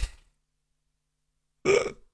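Two short noises: a brief low burst right at the start, then a louder short vocal sound, like a burp or grunt, near the end.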